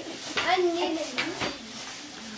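Plastic grocery bags rustling as children open them, with a few sharp knocks and clatters of items inside, under a brief wordless voice.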